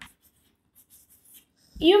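Chalk on a chalkboard: a few faint, short scratches and taps of writing numerals. A woman's voice starts speaking near the end.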